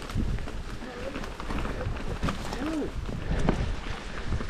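YT Jeffsy mountain bike riding fast over a leaf-covered dirt trail: a continuous rumble of tyres and wind with frequent clicks and rattles from the bike.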